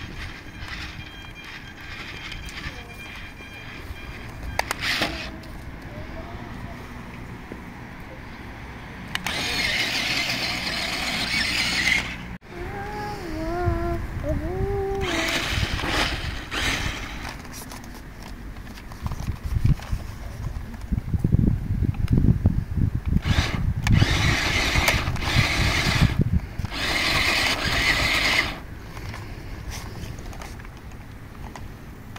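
Toy RC monster truck's small electric drive motors and gears whirring in repeated bursts of a few seconds as it is driven. A heavy low rumbling joins the later bursts, and a short warbling tone sounds about 13 seconds in.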